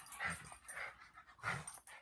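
A small dog panting and snuffling in short, breathy bursts, about two a second.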